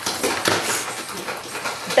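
A pet dog vocalising without a break, worked up and trying to get at a squirrel.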